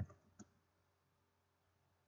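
Two faint computer-keyboard key clicks in the first half second as characters are deleted from a text field, then near silence.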